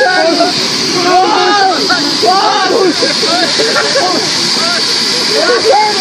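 Several people's voices overlapping, laughing and calling out excitedly, over a steady high hiss.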